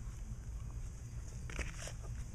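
Faint scraping and handling sounds of a plastic spreader working body filler onto reinforcement mesh, over a low steady hum; a couple of brief scrapes come near the end.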